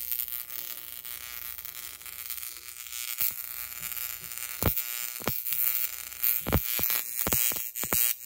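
Violet wand with a conductive-strand whip attachment discharging to a silicone mat and a test implant: a steady high-pitched electrical buzz, with sharp snapping sparks from about three seconds in that come more often toward the end.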